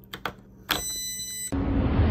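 AA batteries clicking into the battery compartment of an electronic keypad deadbolt, then the lock gives one electronic beep of just under a second as it powers up. Near the end a loud rushing noise cuts in abruptly.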